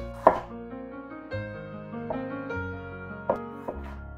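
A kitchen knife cutting through peeled raw potatoes and knocking on a wooden cutting board: one sharp chop about a quarter second in, then two close together near the end. Background music plays throughout.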